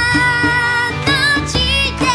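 A Japanese-language song: a female singer holds a long note with a slight waver, then sings two short phrases, over band accompaniment.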